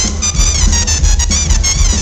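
Live brass band music: a trumpet plays a quick run of short, high notes, some bending in pitch, over a steady low bass line.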